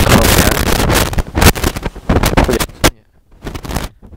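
Handling noise on a handheld dynamic microphone being set up for a test: a loud rustling rumble for about a second, then a run of knocks and clicks. It goes quiet about three seconds in, with a few more small clicks near the end.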